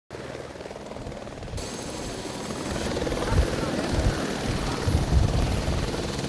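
Outdoor background noise: a low, uneven rumble that grows louder over a few seconds, with faint voices under it.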